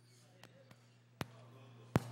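Two sharp clicks, the second louder, over faint room tone and a steady low electrical hum; after each click the background hiss steps up, as when a desk microphone channel is switched on.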